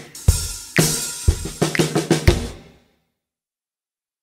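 Drum-kit backing music of a recorded children's chant, a run of drum and cymbal hits that cuts off about two and three-quarter seconds in, followed by silence.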